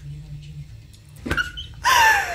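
A woman's laughter: quiet and muffled at first, then a thump about a second and a half in, then a high-pitched squealing laugh near the end that falls in pitch.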